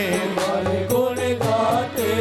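Hindu devotional bhajan music: male voices singing a chant-like melody over sustained instrumental accompaniment and light percussion.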